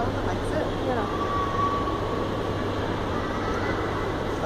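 Steady low hum of a running Schindler escalator, with faint voices in the background. From about a second in, a thin steady tone sounds for a couple of seconds.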